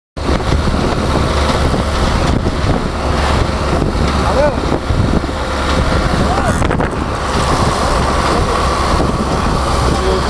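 Steady low rumble with wind noise on the microphone, and a few brief faint calls about midway.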